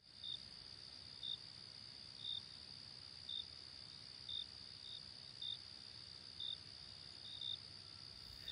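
Faint insect chorus: a steady high-pitched trill with a short, slightly lower chirp about once a second.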